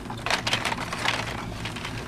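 Plastic blister packs of toy fingerboards rustling and clicking against each other and their metal pegboard hooks as a hand flips through them, in short irregular crackles over a steady low background hum.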